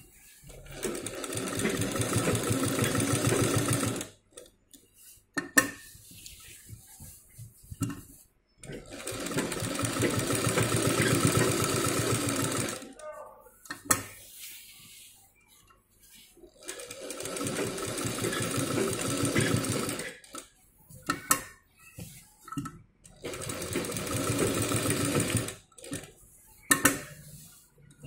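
Sewing machine stitching in four runs of a few seconds each, with short pauses between them that hold sharp clicks and handling of the machine and fabric.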